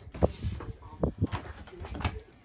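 A run of short, sharp knocks and clicks, about six in two seconds at uneven spacing, the loudest a quarter of a second in.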